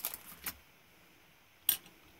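Small craft items being handled on a cutting mat: light clicking and rustling that stops about half a second in, then one sharp click near the end.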